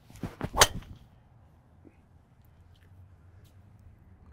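A PING G430 Max 10K driver striking a golf ball: a sharp, loud crack in the first second, loudest about half a second in, with a couple of shorter cracks around it.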